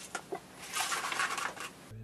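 Handling noise: a few light clicks, then about a second of rustling as the small plastic pump and its packaging are handled. It ends abruptly at a cut.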